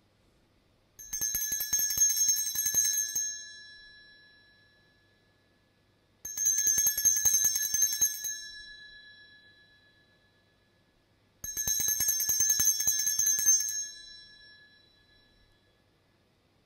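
Altar bells shaken in three rings, each a couple of seconds of rapid jingling that fades out, with about five seconds between them. They mark the elevation of the consecrated host at Mass.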